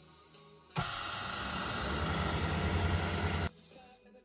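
Wood lathe running with a wooden blank, a steady machine hum under a dense hiss. It starts suddenly about a second in and stops abruptly near the end, with faint background music around it.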